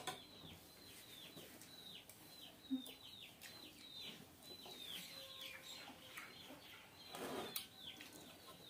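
Faint birds chirping: short high chirps, each falling in pitch, repeated about two a second. A single short thump comes about three seconds in.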